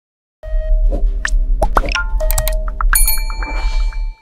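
Electronic outro sting: after about half a second of silence, a deep bass drone comes in under a string of dings, clicks and rising swooshes, ending on held bell-like chimes.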